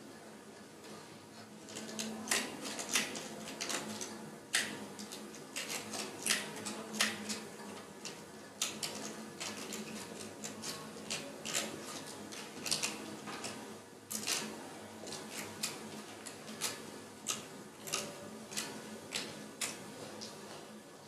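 Sparse, irregular clicks and crackles, a few a second, starting about two seconds in, over a faint low hum.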